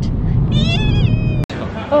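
A short, high-pitched, meow-like squeal from a woman over the low rumble of a car cabin, rising then falling in pitch for under a second. The rumble cuts off abruptly and gives way to the echoing hubbub of a large hall.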